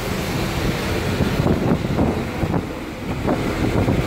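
Wind buffeting the microphone: a steady, fairly loud rushing noise with no clear tone.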